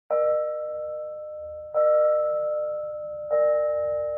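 A bell struck three times, about a second and a half apart, each stroke ringing on with a steady pitch and slowly fading, as the introduction to a song.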